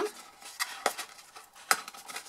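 Cardstock box being handled as its lid is tucked back in: a few light clicks and rustles of card, the sharpest near the end.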